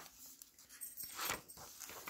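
Paper pages of a handmade journal being turned by hand: a few soft, irregular rustles, the loudest a little past the middle.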